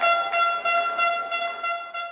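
An air horn held on one long steady note, over a regular beat of about three knocks a second.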